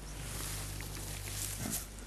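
Low, steady background noise with a constant low electrical hum under it, and a faint brief sound near the end.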